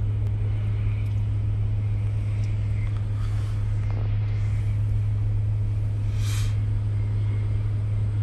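Steady low rumble inside a vehicle's cabin while driving, with two brief swells of hiss about three and six seconds in.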